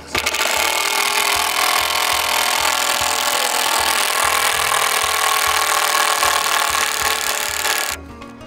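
Cordless impact driver running steadily, driving a wood screw at a slant into the end of a softwood deck board, then cutting off sharply at the end.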